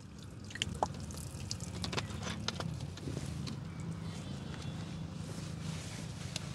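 Soapy water poured from a plastic bottle onto a car door sill and wiped with a microfibre cloth: faint dripping and splashing with scattered small clicks.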